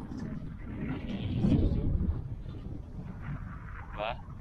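Wind buffeting the microphone: a gusting low rumble that rises and falls, with faint voices under it.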